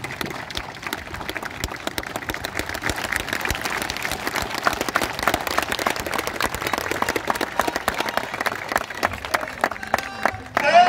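Crowd applauding: many people clapping densely and unevenly, building up over the first few seconds and then holding steady.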